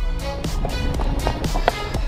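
Background music with a steady, quick beat.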